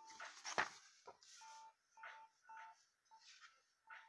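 Comic books being handled and swapped: paper rustling with a sharp tap about half a second in and softer brushes after. Short high beeps, several in a row, sound between the handling noises.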